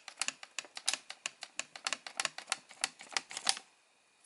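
Folded paper origami ghost crackling as its arms are pulled side to side to rock its body: a quick, even run of light paper clicks, about six a second, that stops about three and a half seconds in.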